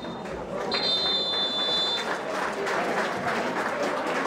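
Referee's whistle blown in one long blast about a second in, followed by crowd applause and voices from the stands.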